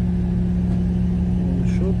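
Quarry dump truck's diesel engine running with a steady low drone, heard from inside the cab.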